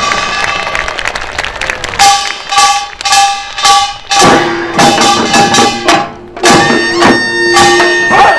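Korean pungmul folk percussion ensemble playing: drums and ringing metal struck in a steady beat about twice a second from about two seconds in, and a held wind-instrument tone joining about six and a half seconds in.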